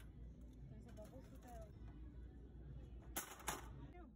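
Faint voices, then about three seconds in two short crinkling rattles as a small packaged item is handled and put into a plastic shopping cart.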